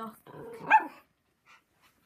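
Puppy giving one loud bark about three-quarters of a second in, still worked up by a passing helicopter.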